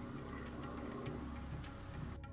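Quiet instrumental background music with a steady low bass line and a soft ticking beat.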